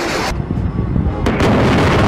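Loud gunfire and explosions: one burst dies away about a third of a second in, and a second, louder burst with a heavy low rumble starts just after a second in.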